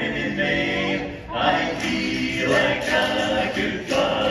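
A barbershop quartet of four men singing a cappella in close harmony, with a short break between phrases about a second in.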